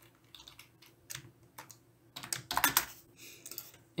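Computer keyboard keystrokes while typing: a few scattered key clicks, then a quicker run of keys about two and a half seconds in.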